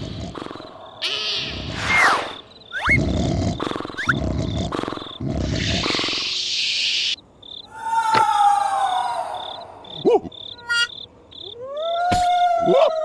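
Cartoon soundtrack: a string of sound effects, noisy hisses and short low rumbles, then a character's long falling cry about eight seconds in. Crickets chirp steadily underneath in a night ambience.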